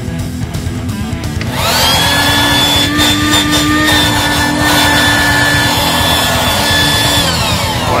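Small 12-volt electric air pump for inflating air mattresses switched on: its motor and fan whine up to speed about a second and a half in, run steadily for about five and a half seconds, then wind down near the end. This is the first test run after fitting it with a new two-prong automotive plug, and it works.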